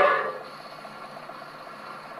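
The last brass chord of a dance-orchestra record on a 1919 Edison Diamond Disc phonograph dies away in the first half second. After that the stylus keeps running in the grooves past the end of the music, giving a steady surface hiss with a faint repeating swish.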